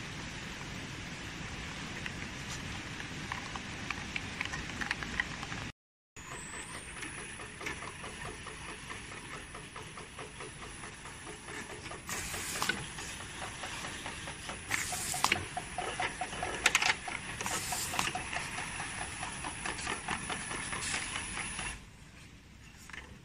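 Automatic wrap-around labeling machine running: steady conveyor and drive-motor noise with a thin high whine. In the second half there are about four short, louder hissing bursts, a couple of seconds apart, as bottles pass the labeling head.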